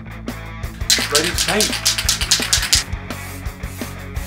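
Background music with a steady beat, over which an aerosol spray can hisses for about two seconds, starting about a second in.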